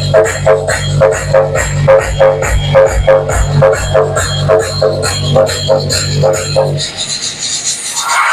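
Electronic dance music with a steady fast beat and a deep bass line, played loud through a pair of DH Discovery DJ 1212F tower speakers as a sound-quality demonstration. About seven seconds in the bass drops out and the music thins.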